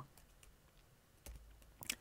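Near silence: faint room tone with a couple of faint, short clicks in the second half.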